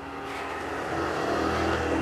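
A motor vehicle passing by, its engine hum swelling gradually louder and starting to fade near the end.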